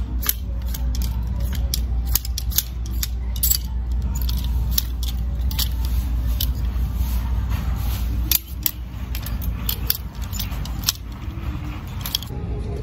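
Plastic clothes hangers clicking and scraping along a metal rack rail as garments are pushed aside one after another, in quick irregular clicks. A steady low hum runs underneath and drops away about eight seconds in.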